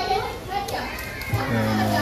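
Crowd chatter with children's voices. About a second and a half in, music joins with steady held low notes.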